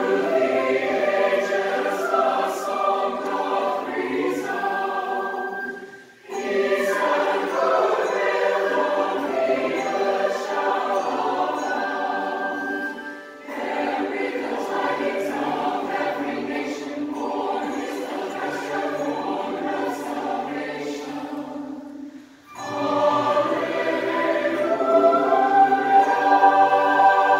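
Large mixed choir of men's and women's voices singing in long sustained phrases, with brief pauses about six, thirteen and twenty-two seconds in.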